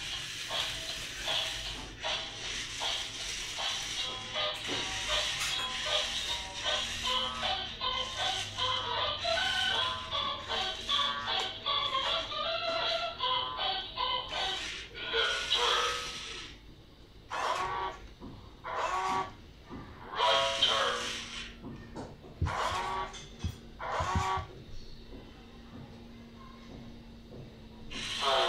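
Electronic music playing from a remote-control Iron Man toy robot's built-in speaker, continuous for the first two-thirds, then broken into separate short bursts of sound with pauses between them.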